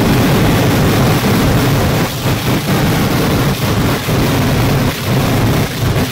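A close-range barrage of fireworks detonations so dense it merges into one continuous loud roar, broken by a few brief lulls.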